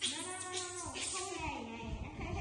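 Baby macaque crying: two long, wavering calls, the first rising and falling in pitch, the second sliding down.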